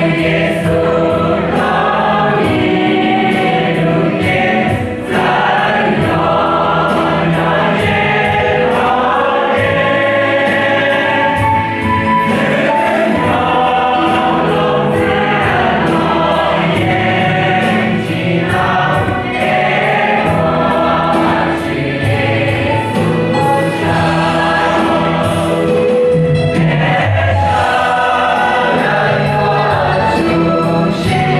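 Church choir of men and women singing a hymn together, with keyboard accompaniment and a steady beat underneath.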